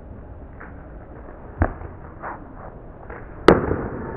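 A cricket bat striking the ball in a sweep shot: one sharp crack near the end, the loudest sound. A duller knock comes about a second and a half in, over steady outdoor background noise.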